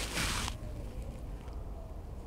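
A brief rustle lasting about half a second at the start as hands handle a few water-soaked corn kernels, then faint room noise.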